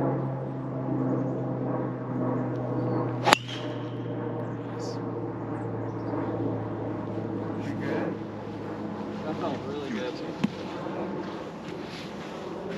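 A driver striking a golf ball off the tee about three seconds in, a single sharp crack. A steady low hum runs underneath.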